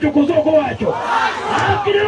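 A large crowd shouting and calling out together, with a man's voice over it. The voices rise and fall.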